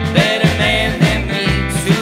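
Live roots band playing a country/rock-and-roll song: hollow-body electric guitar and upright double bass over a steady, regular beat, with melodic lines bending in pitch above.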